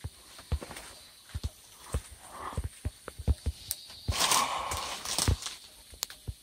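Footsteps and rustling in forest leaf litter: scattered soft thumps, with a louder rustle of leaves and twigs about four seconds in.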